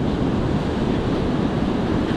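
Ocean surf washing onto a sandy beach, with wind buffeting the microphone: a steady rushing noise.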